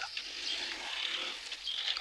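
Steady high-pitched drone of summer insects, typical of cicadas singing in the trees.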